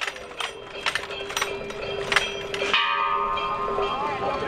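Bell-like metal percussion struck several times at uneven intervals, with a ringing tone that carries on between strikes. Near the end, several higher steady tones join in.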